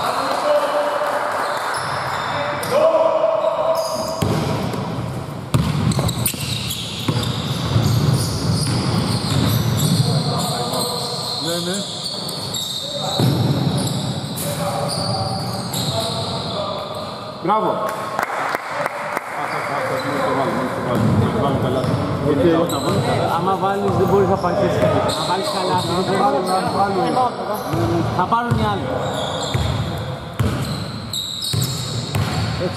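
A basketball bouncing on a hardwood court during a game, with players' voices calling out, all echoing in a large sports hall.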